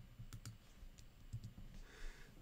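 A handful of faint, irregular clicks from a computer being operated at the desk, over a low room hum.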